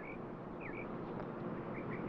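A small bird chirping over and over, each chirp a quick downward slide ending in a short level note, coming about every half-second and getting shorter and quicker near the end, over faint steady outdoor background noise.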